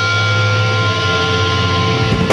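Distorted electric guitar held on a sustained chord, ringing out steadily through the amplifier with a thin high tone over it; the drums crash back in just after.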